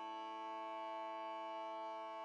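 Background music: a soft, held chord of sustained tones that does not change.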